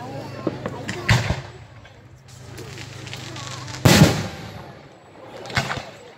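Aerial fireworks shells bursting: three booms about a second in, about four seconds in (the loudest) and near the end, each trailing off in echo.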